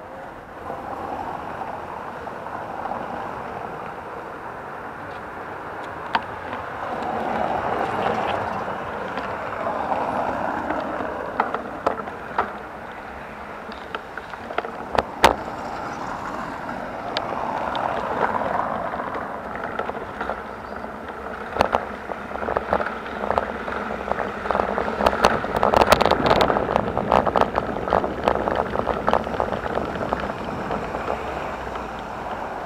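Bicycle rolling over cobblestone paving: a steady rumble from the tyres, with rattling clicks from the bike and camera mount that grow dense and loudest in the last third. Wind noise on the microphone.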